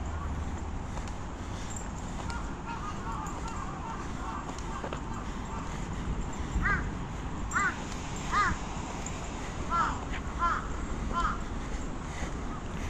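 A crow cawing, six loud caws in the second half after fainter calls earlier, over a steady low rush of wind and movement noise.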